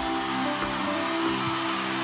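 Live band holding a steady chord in a pause between sung lines, over the even noise of a large concert crowd.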